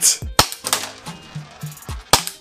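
Airsoft pistol fitted with a muzzle flash/tracer unit fired twice, sharp shots less than half a second apart, over background music.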